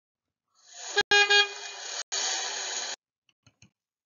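Stock car horn sound effect: a quick double honk about a second in over a hiss of background noise that cuts off abruptly just before three seconds, followed by a few faint clicks.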